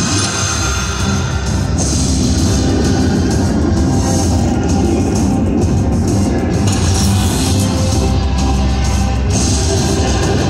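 Zeus Unleashed slot machine's bonus-round music playing loud and steady: electronic game music for the respin feature.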